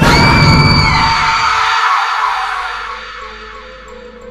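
Cinematic trailer impact hit: a loud sudden boom with a high held tone on top for about the first second, dying away over about three seconds into a low, steady music drone.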